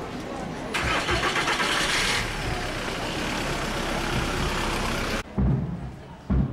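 A car engine cranking on the starter with a rapid ticking, catching, and running steadily for a few seconds before the sound cuts off abruptly. A deep low thump follows near the end.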